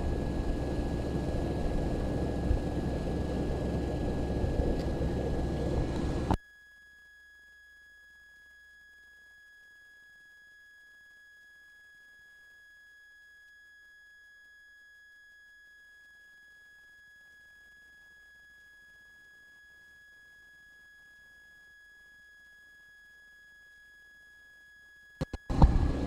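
Wind rumbling on an open outdoor microphone, cutting off suddenly about six seconds in. After that the audio drops out to near silence, leaving only a faint steady high-pitched tone until sound returns near the end.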